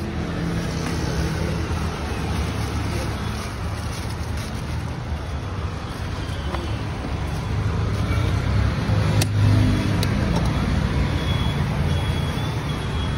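Street traffic noise, a steady rumble of road vehicles, with two sharp clicks near the end.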